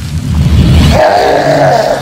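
A low rumbling whoosh of flames flaring up for about a second, followed by a wavering, groaning vocal cry from an animated creature.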